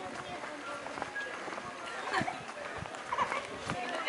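Scattered distant voices of people along a street, with a few soft knocks in the second half.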